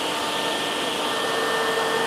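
Steady airy hum of edge banding machinery running, with a few faint steady tones in it.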